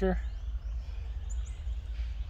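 Steady low background rumble with two faint, short, high chirps about a second and a half in.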